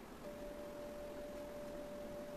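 A faint, steady pure tone held at one pitch, beginning a moment in, over low hiss.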